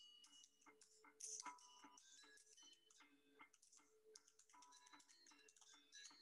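Faint gamelan music played back through a screen-shared video: ringing metallophone and gong-chime tones over a dense run of sharp clicks, the taps of a tap dancer's shoes, with a louder accent about a second in.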